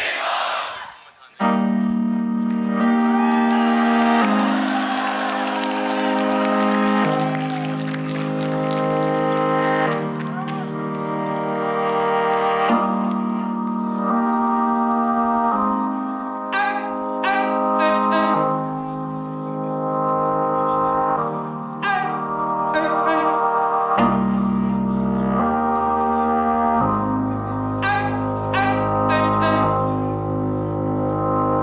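Live vocal looping on a BOSS RC-505mkII loop station: after a brief crowd shout at the start, layered sustained vocal chords build and change every couple of seconds. Short hissy hi-hat-like bursts come in twice, and a deep bass layer enters about 24 seconds in.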